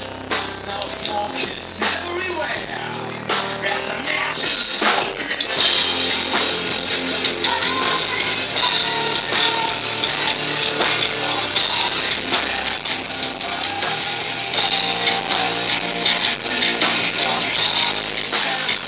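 Live heavy metal band playing an instrumental passage with electric guitar, bass guitar and drum kit, no vocals; the playing gets a little louder about six seconds in.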